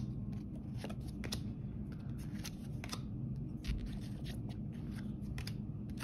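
Thin cardboard trading cards being slid one by one off the front of a hand-held stack and tucked behind it: soft, irregular clicks and rustles of card edges, over a faint low hum.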